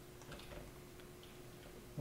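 A few faint, scattered computer mouse clicks over a steady faint hum.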